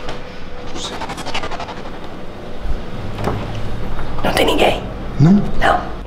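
People's voices in short, scattered sounds, loudest in the last two seconds, with a short rising vocal sound near the end.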